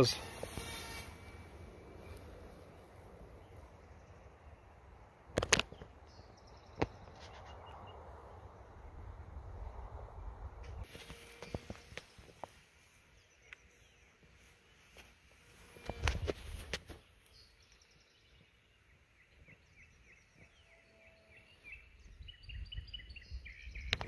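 Wind rumbling on the microphone in an open field, swelling loudest about two-thirds of the way through, with a few sharp knocks and faint bird chirps.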